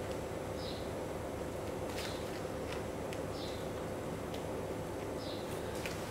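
Quiet room tone: a steady faint hum with a few soft ticks and faint short high chirps scattered through it.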